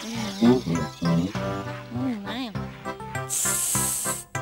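Cartoon soundtrack: music with a wordless, voice-like sound that wavers and glides up and down in pitch, followed by a short, bright hiss near the end.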